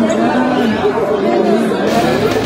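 Several people talking over one another in indistinct chatter.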